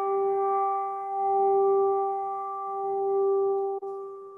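A brass handbell ringing on from a single strike: one clear pitched tone that swells and fades in slow waves, then dies away near the end.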